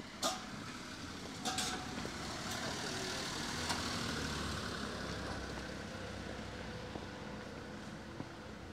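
A vehicle passing close by, its tyre and engine noise swelling to a peak in the middle and then fading away. A sharp click sounds just after the start, and two more come together about a second and a half in.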